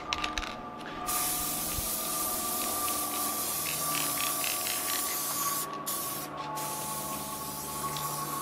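Aerosol spray paint can spraying: a steady hiss starts about a second in, after a few short clicks, and breaks off twice briefly between passes.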